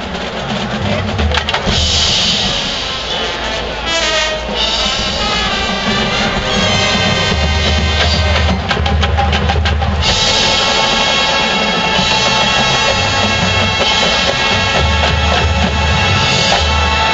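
College marching band playing: brass sounding chords over a drumline with bass drums. The music gets fuller with held brass chords from about ten seconds in.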